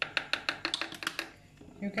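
A plastic measuring spoon tapped rapidly against the rim of a plastic mixing bowl: about a dozen quick, sharp clicks in just over a second, then stopping.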